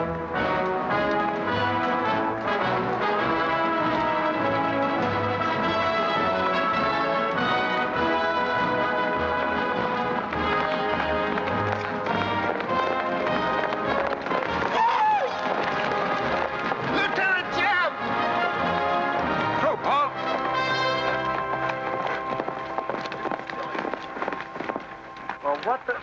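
Orchestral film score playing loudly and continuously. A few short wavering high notes rise above it partway through.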